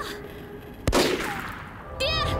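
A single gunshot about a second in, followed by an echoing tail that fades away.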